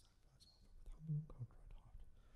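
A faint, low murmured voice: a priest quietly saying a private prayer at the altar, with a few light clicks.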